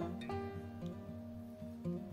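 Soft background music played on plucked acoustic guitar, its notes changing every fraction of a second.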